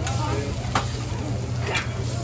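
Metal spatula clicking twice, about a second apart, against the steel teppanyaki griddle as a pan of cooked rice is tipped out onto it, over a steady low hum and faint chatter.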